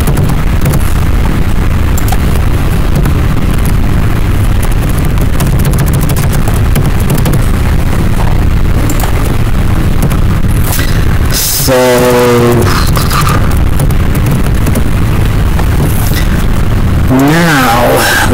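Loud, steady rumbling noise from a faulty microphone, heaviest in the low end, with a brief falling tone of voice about twelve seconds in.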